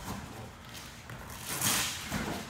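Feet stepping and shuffling on foam mats during sparring, with one louder brief scuff near the end.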